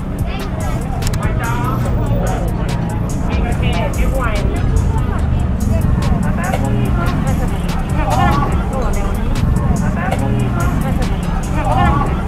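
Busy street ambience, with many people talking and traffic running, under background music.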